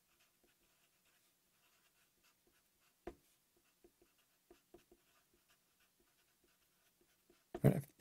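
Black marker pen writing on a sheet of paper: faint, scattered strokes and small ticks, with one louder click about three seconds in.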